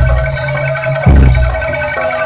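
Javanese jaranan gamelan music played live: ringing metallophone tones over a deep beat, with two deep strokes about a second apart.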